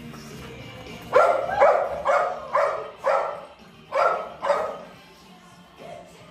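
A small dog barking in short, sharp barks: five in a quick run of about two a second, then a brief pause and two more.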